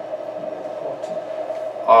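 Dry-erase marker writing on a whiteboard, faint, over a steady room hum that holds one pitch. A voice starts just at the end.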